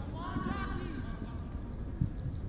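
Distant voices calling out on a soccer field, over a steady low outdoor rumble.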